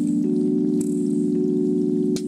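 Chillhop background music: a held chord of steady tones, with a few soft ticks.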